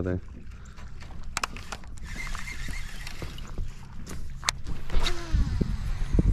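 A few sharp clicks from handling a baitcasting rod and reel in a kayak, over a low rumble of water against the hull. There are heavier low knocks near the end.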